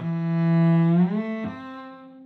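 Cello bowed, demonstrating a shift: a loud sustained low note, then the first finger slides up the string to a brief intermediate note before the pinky lands on a higher note, which is held more softly and fades.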